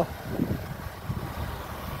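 Chevy Malibu's 2.4 L Ecotec four-cylinder idling steadily, a low even hum.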